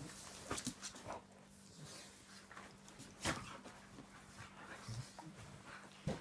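Two dogs play-wrestling on a padded dog bed: faint panting and soft scuffling, with a sharp knock about three seconds in.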